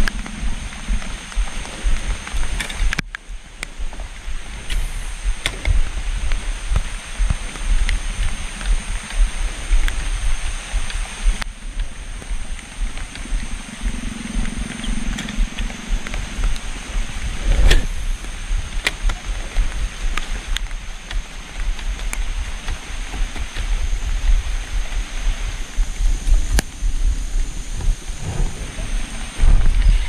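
Steady rain falling on a river and the surrounding grass, a continuous hiss with a low rumble that rises and falls and scattered faint taps.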